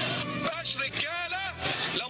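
A voice with no recognisable words, over a low, steady background of music.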